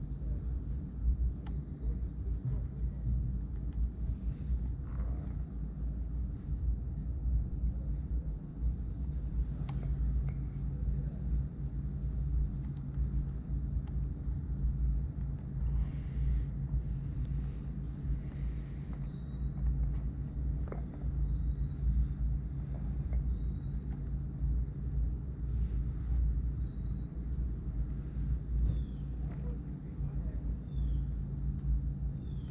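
A steady low outdoor rumble with a few faint small clicks as fishing line and a release clip are handled on the underside of a drone.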